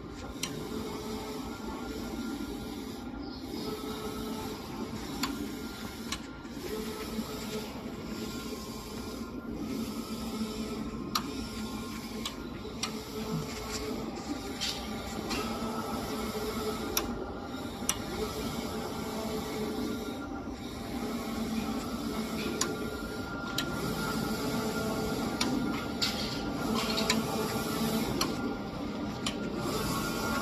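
Locor 1840 wide-format sublimation printer printing on a paper roll: a steady mechanical whir that dips briefly about every three seconds, with occasional sharp clicks.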